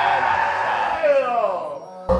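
Young men shouting and yelling in reaction to a video game match, with one long cry falling in pitch about a second in.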